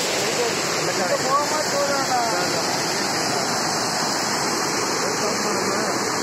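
Steady rush of water tumbling down a stone weir and small waterfall into a channel, with faint voices about a second or two in.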